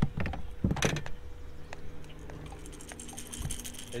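Fishing tackle being handled: a few sharp knocks and clicks in the first second as a rig is picked up, then light metallic jingling of the terminal tackle, over a steady low hum.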